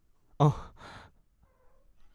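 A man's short, breathy "oh", like a sigh, lasting about half a second.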